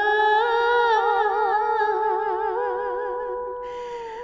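A woman's voice humming a slow lullaby melody in long held notes with wide vibrato, growing softer near the end.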